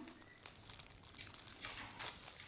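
Quiet pause of faint room noise, with a few soft rustles.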